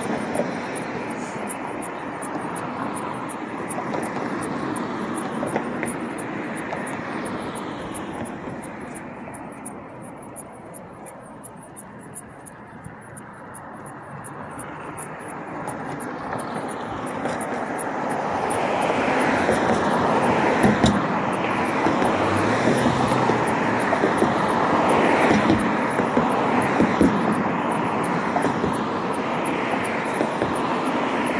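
Passing road traffic: a steady rush of vehicle noise that drops off around the middle and swells louder through the second half.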